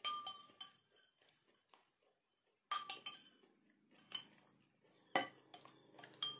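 Metal spoon clinking against a drinking glass as it scoops out the milk drink. Several sharp clinks, each with a brief glassy ring, come in a cluster at the start and again from about three seconds on. The loudest falls a little after five seconds.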